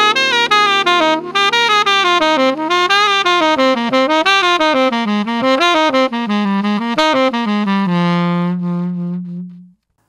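Tenor saxophone playing a descending hexatonic scale exercise in quick eighth notes: a step-step-skip pattern that weaves up and down while working its way down the scale, over a sustained low backing chord. It ends on a long held note that fades out.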